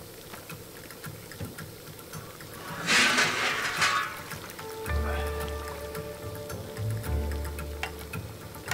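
A loud rush of hissing noise about three seconds in, lasting about a second, as the heavy lid comes off a black cast-iron cauldron (gamasot) and steam pours out of the boiling chicken broth. Background music with held notes over a bass line comes in about five seconds in.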